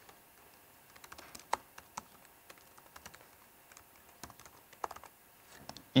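Faint, irregular clicking of keystrokes as someone types a short line of code on a laptop keyboard.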